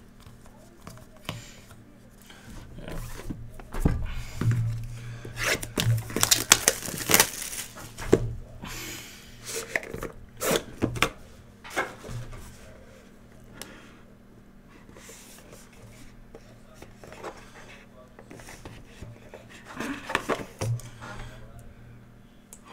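Hands opening a cardboard trading-card hobby box and pulling out its sleeve and foam padding: irregular rustles, scrapes and light knocks of cardboard and packaging. The handling is busiest from about four to twelve seconds in and again around twenty seconds, over a faint steady low hum.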